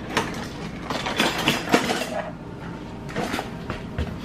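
Metal cutlery clinking and clattering in three short bursts, as a utensil is picked up to dig into the burnt Nutella.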